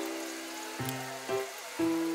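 Soft background music of plucked-string notes, with a few new notes struck in the second half.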